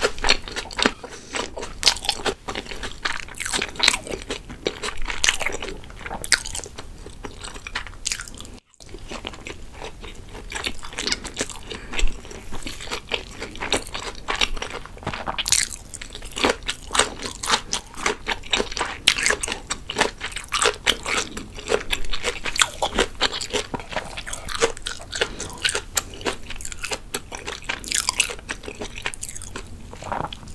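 Close-miked chewing of salmon sushi: wet, irregular mouth clicks and smacks that go on throughout. The sound cuts out for an instant about nine seconds in.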